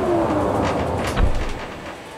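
A train passing on the neighbouring track. A falling tone dies away early on, then wheels click over rail joints with a low thud about a second in. The sound fades out near the end.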